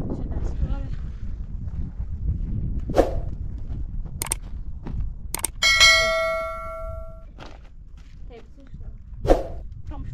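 Metal dishware clanking as it is handled: a few sharp knocks, then about six seconds in a loud clang that rings on for about a second and a half before dying away.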